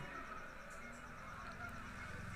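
Faint, steady background hum of a cricket ground's live feed, with no distinct event standing out.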